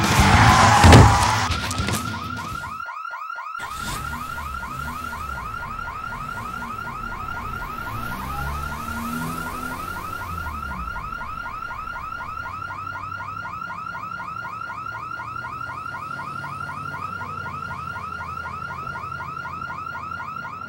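A loud crash about a second in. After a short gap, a car alarm sounds a fast, repeating electronic warble that runs on steadily.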